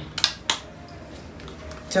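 A few short, sharp clicks in the first half second, like small hard objects being set down or knocked together, then faint room tone.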